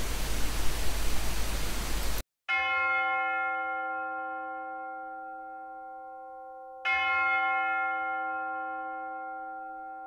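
Steady microphone hiss that cuts off abruptly, then a bell struck twice, about four seconds apart, each stroke ringing on and slowly fading.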